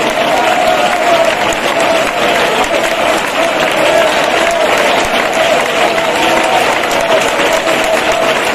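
A crowd of people clapping and applauding continuously, with a faint wavering held tone underneath.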